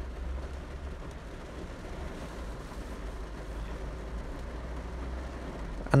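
Steady low rumble with a faint hiss over it: quiet background noise with no distinct event.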